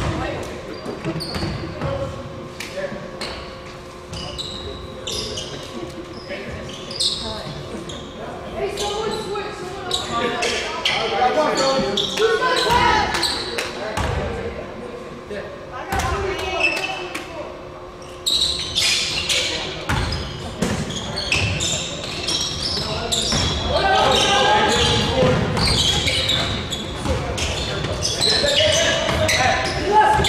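Basketball game sounds in a gym: a ball bouncing on the court and players and spectators calling out, echoing in a large hall. The voices grow louder a little past the middle.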